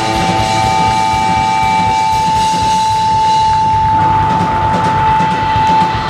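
Live blues-rock band holding the final note of a song: one high note sustained steadily over rolling drums, with cymbals washing in more strongly toward the end before the note stops.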